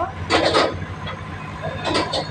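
Freight train wagons rolling past on the rails: a steady low rumble, with bursts of wheel-on-rail noise about a third of a second in and again near the end.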